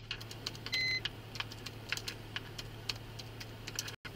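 Irregular clicking of keys being typed on a keyboard, with a short electronic beep about three quarters of a second in, over a steady low hum.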